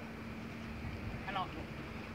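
Low, steady wind rumble on the microphone, with a brief faint voice in the background near the middle.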